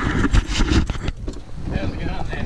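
Four-wheel drive's cab noise: a low engine and road rumble with knocks and rattles, easing off in the second half.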